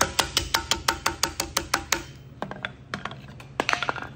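Rawhide mallet striking a copper strip laid over a steel bar, forming a lid handle: a quick, even run of about seven blows a second for two seconds, then a few scattered strikes.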